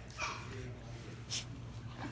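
Small long-haired dog playing roughly on a couch blanket, making short whimpering play noises, with a sharp noisy huff past halfway.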